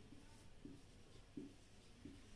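Faint strokes of a marker pen writing digits on a whiteboard, a few short rubbing strokes in a quiet small room.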